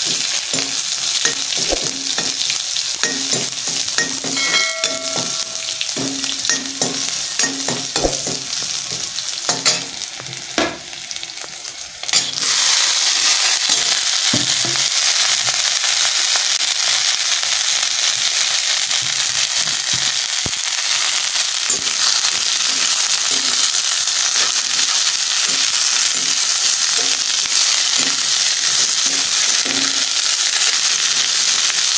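Chopped onion frying in hot oil in an aluminium kadai, a steel spoon stirring and scraping the pan with scattered clicks. About twelve seconds in the sizzling jumps suddenly louder and holds steady, with sliced bitter gourd frying and being stirred in the oil.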